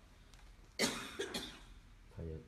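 A person coughing: one sharp cough a little under a second in, followed quickly by a shorter second cough.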